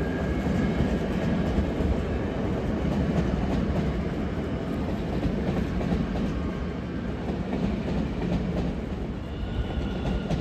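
Electric passenger trains on the tracks: a steady rumble with the clatter of wheels on the rails, easing slightly toward the end. A faint high whine comes in near the end.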